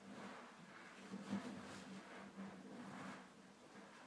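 Near silence: quiet room tone with a faint steady low hum.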